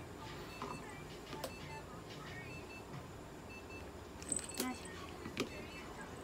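A few sharp clicks and clinks of handling on a steel exam table, the loudest cluster about four and a half seconds in, around when a plastic feeding syringe is set down. Faint short high beeps repeat in the background.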